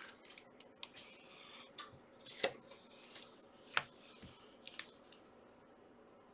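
Trading cards being handled and set down on a table mat: a few light, sharp clicks and soft card-on-card sounds, a second or so apart.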